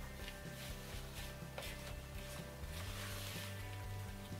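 Background music with sustained tones and a low bass line, over faint scraping of a wooden spoon stirring flour into dough in a plastic bowl.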